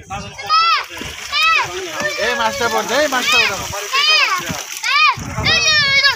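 Water splashing as a mass of live fish thrashes in a net held in shallow water, under high-pitched voices calling out in rising-and-falling shouts about once a second; the voices are the loudest thing.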